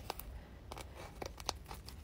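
Faint rustling and scratching of mesh net fabric as hands smooth it and pull it taut over a wig head, with a few brief scratchy touches.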